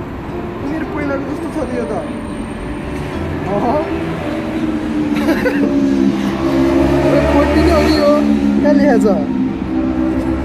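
Busy city street: road traffic with a steady low engine rumble that grows louder in the second half as a vehicle comes close, mixed with people's voices nearby.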